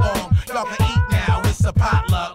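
Hip hop track: a beat with a fast run of deep bass-drum hits and sharp percussion, with rapped vocals over it.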